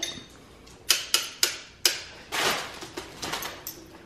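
Sharp, irregular clicks and clacks from a folding exercise bike being ridden and handled: four close together about a second in, then a short rattle and a few lighter clicks.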